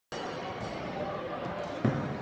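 Reverberant room tone of a large, empty gymnasium, a steady hum with faint distant voices, and a brief low thump near the end.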